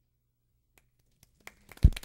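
Near silence, then scattered sharp clicks and one loud, low thump near the end, like a bump on a microphone, followed by more clicking and rustling.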